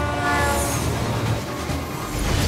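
A suburban electric train's horn sounds in a short blast near the start, over the steady low rumble of a moving train.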